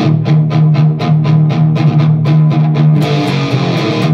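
Electric guitar through a KHDK Ghoul Screamer overdrive pedal with its compressor switch at stage 2, playing fast, even repeated picking on one low note, about six strokes a second. About three seconds in, a brighter, fuller strum breaks in before the low picking resumes.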